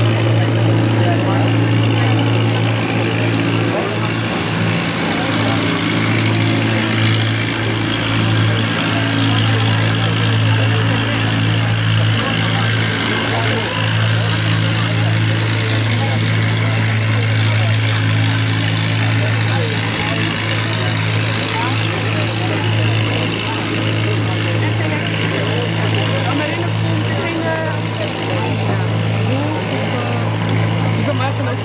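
A motor running steadily at idle: one unchanging low hum, with indistinct voices of people around it.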